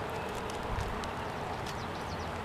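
Steady outdoor background hiss with a few faint, short high ticks scattered through it.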